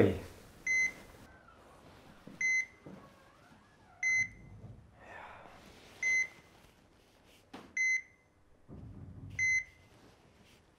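Hospital heart monitor beeping steadily, one short high beep about every 1.7 seconds, each beep marking a heartbeat.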